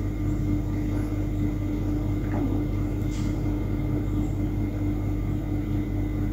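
A steady mechanical drone with a constant low hum, like an engine or motor running without change.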